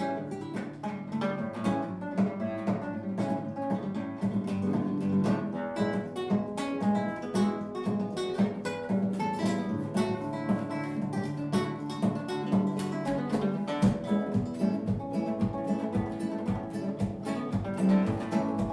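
Background music played on acoustic guitar, with quick plucked and strummed notes.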